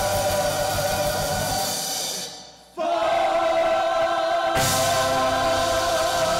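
Gospel praise team singing into microphones over a band. About two seconds in the music fades almost out, then the voices come back holding a chord alone, and the full band comes back in a second and a half later.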